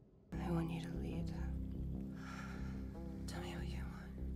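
TV drama soundtrack starting about a third of a second in: background music with sustained low notes under quiet, soft-spoken dialogue between two characters.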